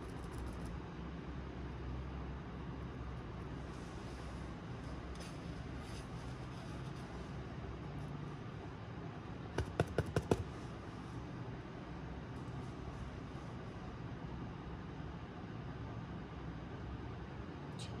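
Steady low room hum, with a quick run of five or six sharp taps about ten seconds in as the plate palette and brush are handled while paint is loaded onto the brush.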